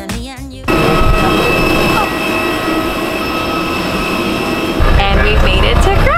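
The tail of a music track cuts off abruptly, giving way to the steady, loud cabin roar of a jet airliner on the ground, with a high, even engine whine over it. About five seconds in, this changes to a deeper vehicle rumble with voices.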